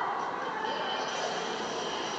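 Steady background noise of an indoor swimming pool hall.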